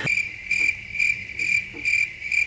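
Cricket chirping sound effect: a steady high chirp pulsing a few times a second, starting abruptly as the laughter stops. It is the stock comic cue for an awkward silence after a joke.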